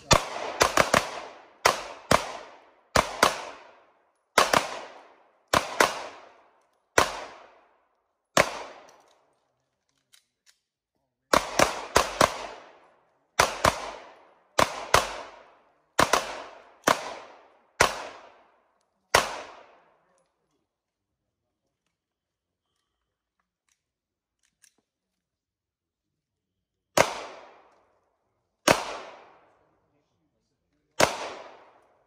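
Handgun gunfire from several shooters firing at once: fast, overlapping shots in two long runs with a short lull of about three seconds between them. The firing stops for several seconds, then two last single shots come near the end.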